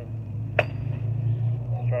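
Gerber Gator kukri machete blade chopping into a thicker shrub branch: one sharp strike about half a second in, with a brief ringing after it. A steady low rumble runs underneath.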